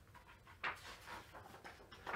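Quiet room with a brief soft rustle about two-thirds of a second in as a picture-book page is turned.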